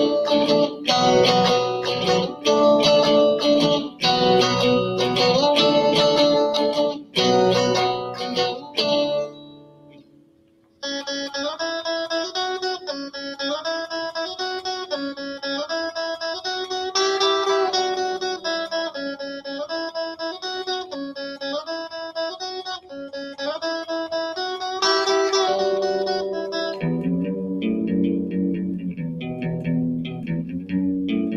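Solo electric guitar played through a small combo amplifier: loud strummed chords for the first nine seconds, fading almost to silence about ten seconds in, then a quieter passage of picked notes and chords, with lower notes coming in near the end.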